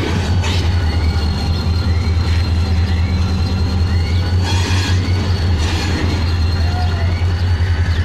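Diesel locomotive engine running with a steady low throb as the locomotive moves slowly along the station track during a locomotive change. A faint high whine and short chirps about once a second sit above it.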